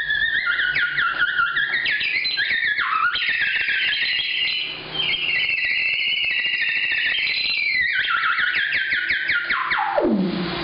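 Theremin played in its high register, an improvised line full of rapid short upward swoops and wobbling pitch. Near the end it makes a long slide down into the low register. The instrument has not yet been warmed up or tuned.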